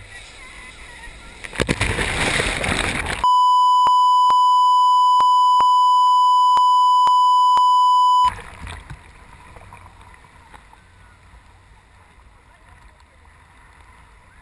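Sea surf washing around a swimmer, with a louder wave breaking and splashing about two seconds in. Then a steady 1 kHz test tone sounds loudly for about five seconds and cuts off suddenly, and quieter surf returns.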